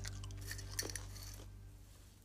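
Someone crunching and chewing a crisp baked bread chip, a few short crunches in the first second, then fading.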